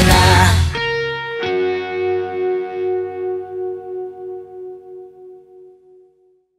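A live rock band's final hit: the full band stops short a little under a second in, leaving an electric guitar chord ringing. The chord is struck again about a second and a half in, then wavers and fades away.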